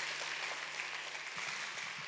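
A church congregation applauding, a steady patter of many hands clapping that slowly tapers.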